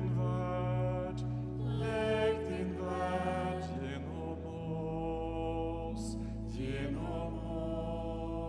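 Slow, chant-like sung prayer response by voices over sustained low accompaniment, the held low note shifting about halfway through.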